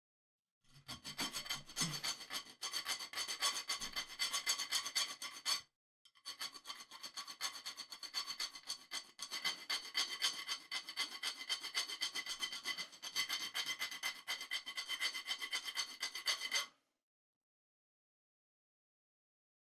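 Small hand file rasping on the selector of a Tippmann M4 airsoft rifle, in rapid back-and-forth strokes. It is cutting clearance into the selector's detent cutaways so the part moves freely. There are two long bouts with a brief pause around six seconds in, and the filing stops about a second before the end.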